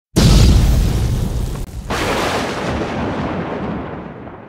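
Two cinematic boom sound effects for a logo intro: a loud hit right at the start and a second one nearly two seconds in, each fading slowly away.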